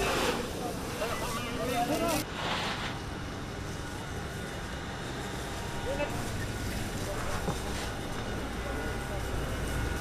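Men's voices calling out for about the first two seconds, then a steady low rumble under an even hiss through the firefighting, the rumble a little stronger in the second half.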